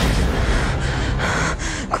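A woman breathing hard in rough, gasping breaths, over a steady low rumble.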